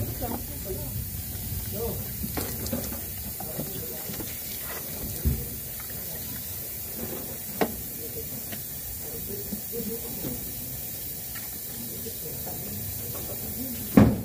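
Steady hiss of gas escaping through a red charging hose attached to the service valve of a split-type air conditioner's outdoor unit, running on without a break, with a few light knocks of hands on the fittings.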